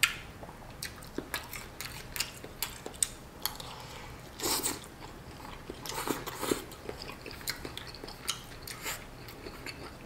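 Close-up eating sounds: chewing a mouthful of noodles and shrimp, with many small wet clicks and smacks. There are louder slurps from a spoonful of broth a little past the middle.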